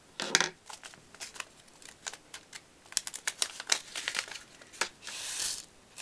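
Scissors snipping open a paper seed packet: a scatter of small clicks and paper crinkling. Near the end comes a short rustling hiss as zinnia seeds are shaken out of the packet onto a plastic plate.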